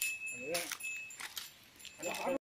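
Light metallic jangling clinks over a thin, steady high ring, with a short voice-like call about halfway through.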